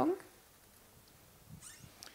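A spoken question ends, followed by a pause of quiet room tone with a faint short noise a little past halfway.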